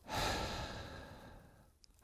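A man sighing: one long, breathy exhale that starts abruptly and fades away over about a second and a half.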